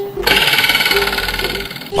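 A fast, steady rattling whirr that starts a moment in and fades just before the end.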